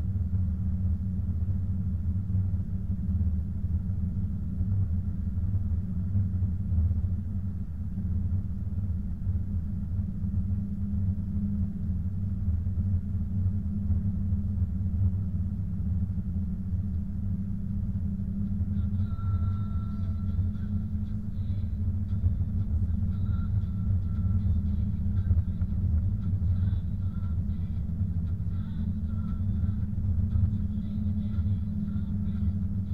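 Steady low rumble of a car driving on a snow-covered road, engine and tyre noise heard from inside the cabin. Faint high tones join in about two-thirds of the way through.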